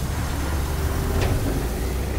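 Heavy tanker truck's diesel engine rumbling steadily as the truck pulls away across the sand.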